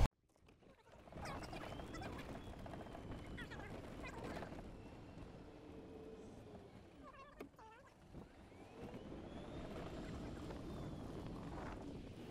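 Faint outdoor ambience with the soft whine of an electric golf cart's motor, which rises and then falls twice as the cart moves along the path. There is a small click partway through.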